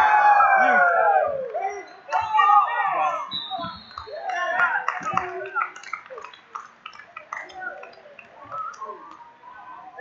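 Coaches and spectators shouting loudly at a wrestling bout as a wrestler is pinned, loudest in the first second and a half, then dying down to scattered voices and a few claps.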